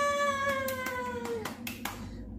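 A woman's voice holding a long, high, drawn-out exclamation that slowly falls in pitch, the stretched end of "carbonara!". About a second and a half in, a few short sharp sounds follow.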